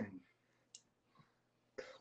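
Near silence in a pause between a man's spoken phrases, broken by one faint short click a little before the middle and a brief faint sound just before he speaks again.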